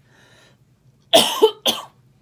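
A person coughs twice in quick succession, about a second in, the first cough longer and louder than the second.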